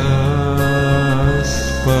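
Russian song: a voice holds one long sung note over instrumental accompaniment, moving to a new note near the end.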